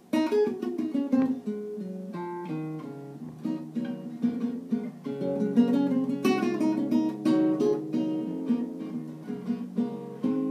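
Nylon-string classical guitar plucked solo, playing a blues intro of single notes and chords that starts abruptly.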